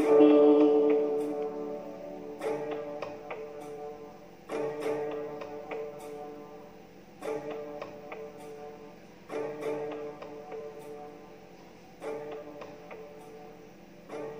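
Instrumental backing music playing on after the singing has stopped: a chord struck about every two and a half seconds, each ringing and dying away. The first chord is the loudest and the later ones grow fainter, with light ticks over the top.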